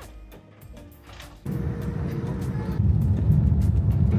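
Soft background music, then about one and a half seconds in a sudden loud low rumble inside an airliner cabin as it lands on the runway, growing louder again near the three-second mark.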